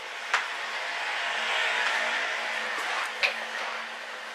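A rushing noise that swells to its loudest around the middle and fades again, with two sharp clicks about three seconds apart.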